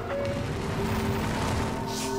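Background music holding sustained chords under a steady rumbling, crashing sound effect of an avalanche. The noise swells brighter near the end.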